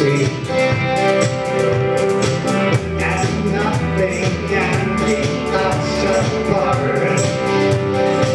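Live worship band playing a song: drum kit keeping a steady beat under electric guitar, bass and singing voices.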